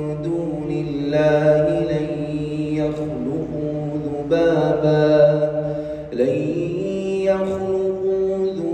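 A male reciter chanting the Quran in the melodic tajwid style, holding long sustained notes that step and glide between pitches, with a brief break about six seconds in.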